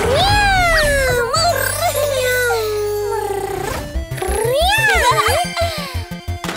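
A long, drawn-out cartoon kitten meow that rises briefly and then slowly falls in pitch, followed by a second shorter meow, over background music whose beat comes in about four seconds in.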